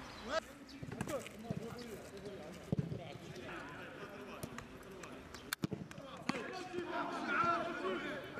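Footballs being kicked during training: several sharp thuds of boot on ball at irregular moments, with players' voices calling out across the pitch, clearer near the end.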